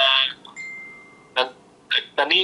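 A man speaking, his words breaking off for about a second, during which a faint steady high tone sounds, before short syllables resume near the end.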